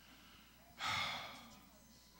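A man exhaling once, a sigh into a handheld microphone held close to the mouth, starting a little under a second in and fading over about a second.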